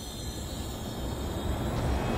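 A low rumble that starts suddenly and swells steadily louder.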